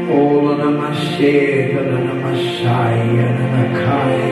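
Slow, sustained ambient keyboard chords, with a man's voice chanting a prayer in tongues over them.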